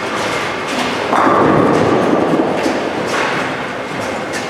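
Bowling alley din: bowling balls rolling and thudding on the lanes, rising to a louder rumble about a second in, with short clatters of pins.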